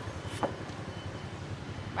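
Steady hum of street traffic, with a single short knock about half a second in as a knife cuts into a coconut's husk.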